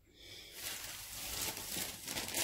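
Soft, steady rustling of clear plastic jewellery bags being handled, starting a moment in.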